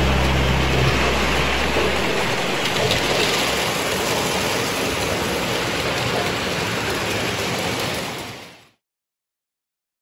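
Toy electric trains running on the layout track, a steady rushing rumble of wheels and motors that fades out about eight and a half seconds in. The last low chord of a song rings out over the first two seconds.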